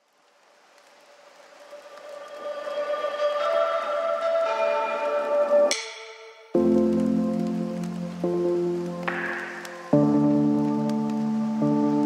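Background music: a calm instrumental track of sustained synth chords fades in from silence, drops away briefly near the middle, then returns with new held chords that change again about ten seconds in.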